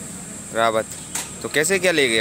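Speech only: two short stretches of a voice talking, with steady road-traffic noise behind.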